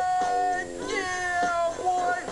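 A man's voice in long, drawn-out high-pitched yells: two held cries, the second falling slightly in pitch, and a short third one near the end.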